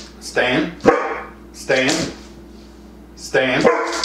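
Catahoula Leopard Dog barking three times, about a second and a half apart, each bark a short drawn-out call.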